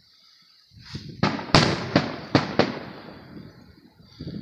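Aerial fireworks shells bursting overhead. A rumble builds about a second in, then comes a quick run of five sharp bangs, the loudest about a second and a half in, with an echoing rumble that dies away.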